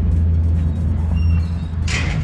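River water taxi's engine running with a steady low rumble, with a brief hiss near the end.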